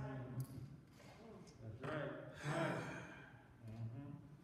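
A man's voice heard faintly through the church sound system, speaking in short phrases with pauses between them.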